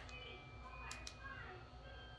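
Quiet room with a faint murmured voice and one sharp click about a second in.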